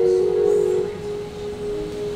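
Organ holding a steady chord, with one note dropping out about a second in.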